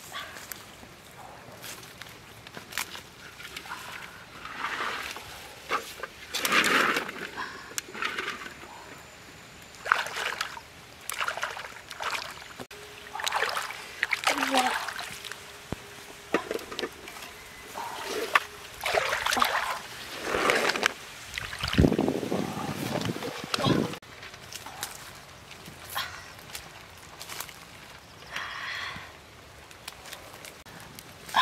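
Water sloshing and splashing in irregular bursts at the river's edge.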